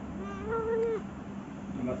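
A long-haired domestic cat meowing once, a drawn-out call just under a second long that rises and then falls in pitch.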